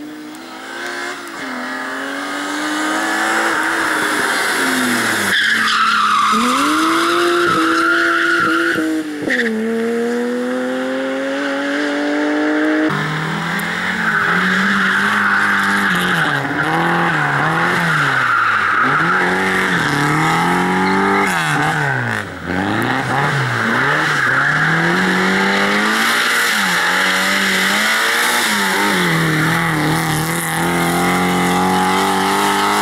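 A rally car engine at full throttle, its pitch climbing steeply and dropping at two gear changes as the car comes on. Then a Lada 2107 rally car slides around a loose, dusty surface, its engine revving rapidly up and down under throttle blips, with tyres skidding and squealing.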